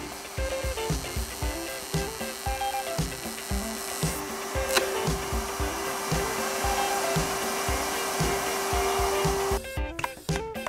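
Table-mounted router with a flush-trim bit running at a steady pitched whine while it trims a guitar neck to its template. The router stops suddenly near the end. Background music with a steady beat plays throughout.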